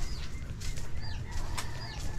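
A bird chirping: three short, high calls, each falling in pitch, about a second apart, over the clicks of footsteps and a low background rumble.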